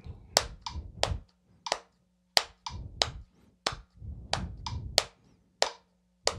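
Hand claps in a steady, even rhythm: quarter-note triplets played continuously, so that each bar is divided into six equal parts.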